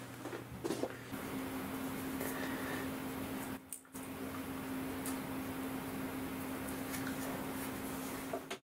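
Faint handling sounds of tape being wrapped around the end of a lathe spindle, over a steady hum.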